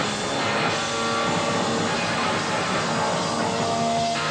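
Punk rock band playing, with electric guitar to the fore.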